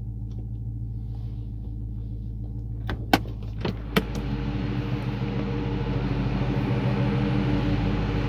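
2022 Dodge Charger's 5.7-liter Hemi V8 idling steadily. A few sharp clicks come about three to four seconds in as the driver's door is unlatched and opened, after which the engine sound grows louder and fuller.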